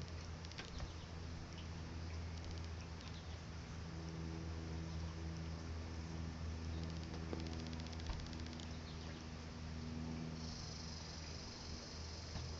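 A steady low mechanical hum with several pitched overtones that swell and fade, and about ten seconds in a high, steady insect buzz joins it.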